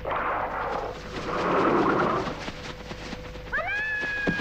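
A rushing, rustling noise, then about three and a half seconds in a long high-pitched wailing cry that rises, holds and falls away.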